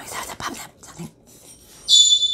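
Faint paper handling, then near the end a sudden high-pitched squeal that holds one pitch.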